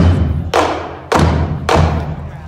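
Marching drumline of snare, tenor and bass drums striking four loud unison hits about half a second apart, each with a low bass-drum boom that rings on and dies away after the last hit.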